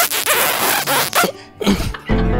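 An exaggerated wet kissing sound made by mouth close to the microphone: a long, noisy smooch lasting about a second and a half, with a few sharper smacks in it.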